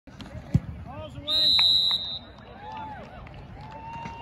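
A football kicked for an extra point: a single sharp thump of the foot on the ball about half a second in, followed about a second later by a steady, shrill whistle blast lasting under a second, with crowd voices around it.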